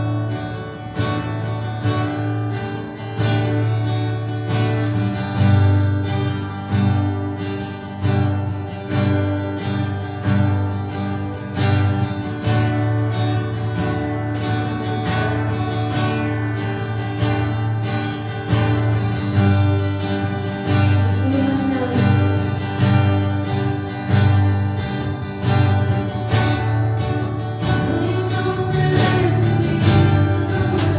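Live worship band playing: strummed acoustic guitar over a steady drum beat and electric guitar, with a woman's voice singing in places.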